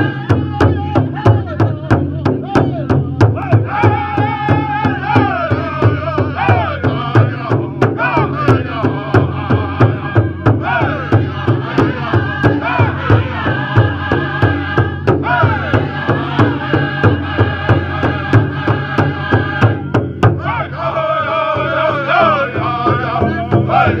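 Group of singers chanting a Native American 49 song together over a steady beat on a powwow drum, the beat less distinct in the last few seconds.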